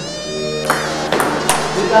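Table tennis ball being hit back and forth in a rally, four sharp clicks about half a second apart, over background music.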